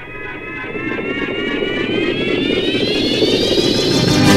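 ARP synthesizer music: a buzzy sustained tone over a swelling wash of noise, getting steadily louder, its pitch gliding upward in the last two seconds into the next passage.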